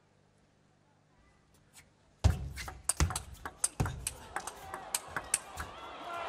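Table tennis rally: a plastic ball clicking sharply off rackets and table in quick, irregular succession. It starts about two seconds in after near silence, and the first hit is the loudest.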